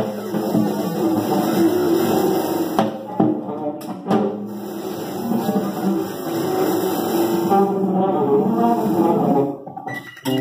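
A live band playing: a drum kit under dense, sustained pitched instrument notes, with scattered sharp drum hits. The music thins out and drops in level just before the end.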